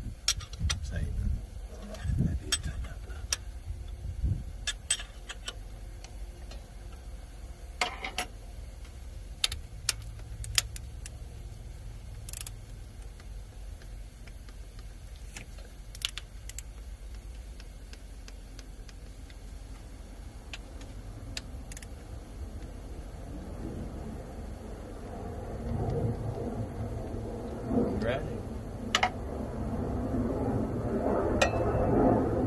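Metal tool clinks and sharp clicks as a socket and torque wrench are handled and worked on bolts atop a Cat C15 diesel's cylinder head, torquing them to 15 foot-pounds. A low rumble builds over the last few seconds.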